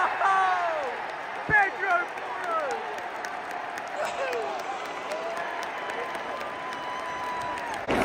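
Stadium crowd cheering and applauding just after a goal, with nearby fans shouting; in the second half one long held shout or chant note carries over the crowd noise.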